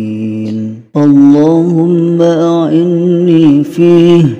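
A voice chanting an Arabic du'a in a melodic, recitation style: a long held note, a short break about a second in, then the chant picks up again with wavering, drawn-out notes.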